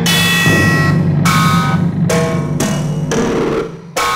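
Jungle (drum and bass) music: chopped breakbeat drums with sustained bass underneath and short pitched stabs. The music thins out briefly just before the end.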